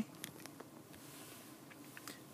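Faint, steady room tone inside a parked car's cabin, with a couple of faint clicks.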